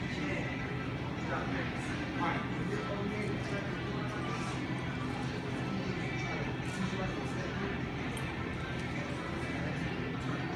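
Indistinct murmur of voices over a steady low hum in a large gym hall, with a few faint soft taps.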